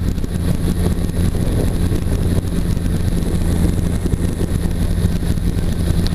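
Weight-shift trike's engine and propeller running steadily in flight, a constant low drone.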